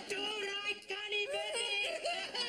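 A short sung phrase: a high voice holding a few notes that step up and down in pitch, in a wavering, yodel-like line.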